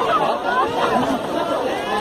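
Group chatter: several people talking at once, their voices overlapping in a continuous babble.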